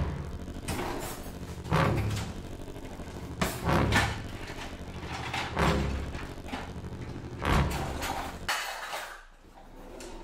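Kitchen cupboard doors and drawers being opened and shut one after another while hands rummage through their contents: a series of knocks and bangs, about one every two seconds, with rustling in between and a quieter stretch near the end.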